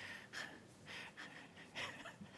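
Quiet room tone with a few faint, short breaths near the microphone.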